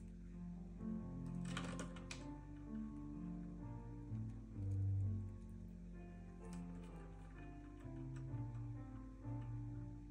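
Slow background music in sustained notes, over which a small bunch of metal keys hanging in a cabinet lock clinks and jingles as a bird pecks at them: a cluster of clicks about a second and a half in, and a lighter one about halfway through.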